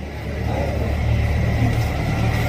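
Steady low rumble of background road traffic, with no clear single event.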